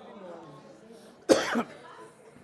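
A single short cough a little past a second in, over low room noise.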